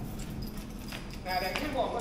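Footsteps of sandals slapping on a concrete floor over low background noise, with a brief voice near the end.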